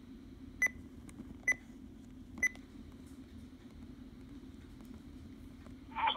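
Three short, high electronic beeps about a second apart from a RadioShack Pro-668 digital scanner, as its playback passes from one recorded transmission to the next, over a faint steady hum from its speaker.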